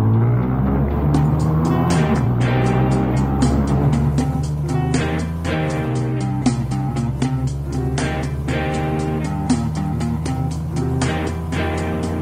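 Rock music with a steady drum beat. Under it runs the engine of a Yamaha RD 350 YPVS motorcycle, a two-stroke parallel twin, on the move.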